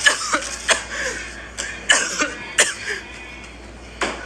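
A woman's short, sharp vocal bursts, like coughs or stifled laughs, four of them, fading to a quieter stretch near the end.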